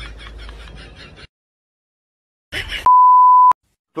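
A single steady electronic beep, one pure tone a little over half a second long, the kind of bleep used to censor a word; it comes about three quarters of the way in, right after a short burst of sound, and is the loudest thing heard. Before it, other sound fades out about a second in, leaving a stretch of dead silence.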